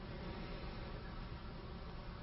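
Faint steady hiss with a low buzz underneath, the background noise of the recording between spoken phrases.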